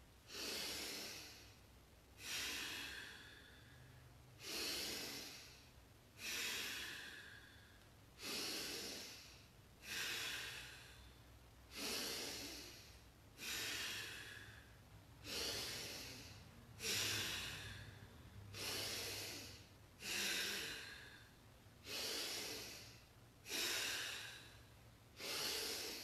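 Bhastrika (bellows breath): a person's forceful, rhythmic breaths in and out, about fifteen of them, one every second and a half to two seconds, each starting sharply and fading away.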